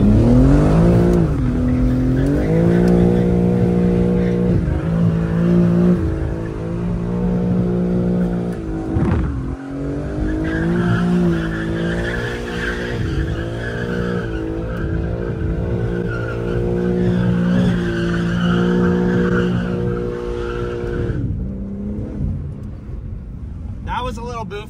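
BMW M3 Competition's twin-turbo inline-six revving hard, its pitch climbing, holding and dropping again and again as the car is driven hard through corners. From about ten seconds in, tyres squeal alongside the engine until both fall away a few seconds before the end.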